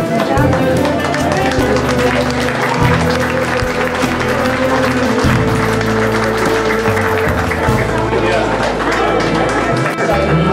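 Music with held notes and a shifting bass line, over the voices of a crowd.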